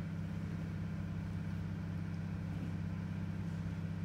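A steady low hum with no other sound over it.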